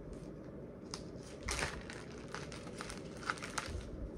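Plastic and foil packaging crinkling in short bursts as Liquid IV drink-mix stick packets are handled and sorted, loudest about a second and a half in and again near the end, over a steady low hum.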